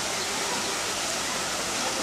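Steady rushing noise of falling water, even and unbroken.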